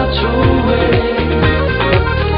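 Background music with a steady beat, about two beats a second.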